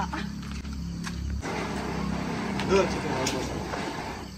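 Ground firework lit on the ground, catching about a second and a half in and hissing steadily as it sprays sparks.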